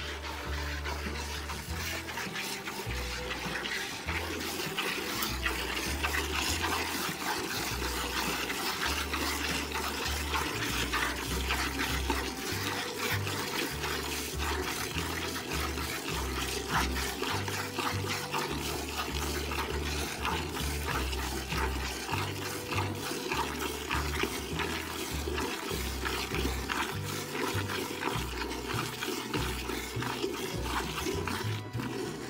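Hand milking: quick repeated squirts of milk hitting a metal pail, with the cow letting its milk down readily. Background music with changing bass notes runs underneath.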